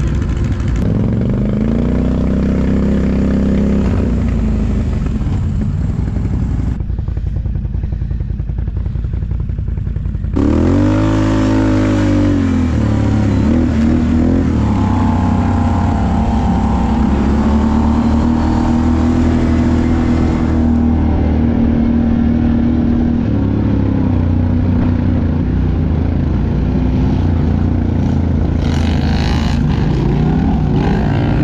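ATV engines running and revving, their pitch rising and falling with the throttle. A sudden sharp rise in revs comes about ten seconds in, and the engines then run on under steady throttle.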